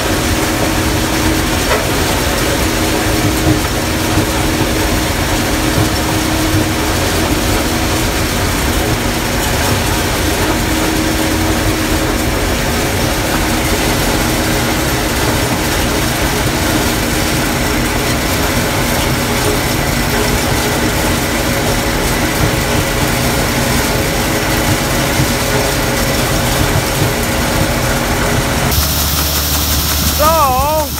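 Gleaner combine harvesting corn, heard from inside the cab: engine and threshing machinery running steadily, a constant drone with a few steady tones through it. The sound changes abruptly about a second before the end.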